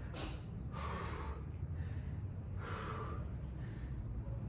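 A man breathing hard after exercise, three heavy breaths in a few seconds as he recovers between sets of planks.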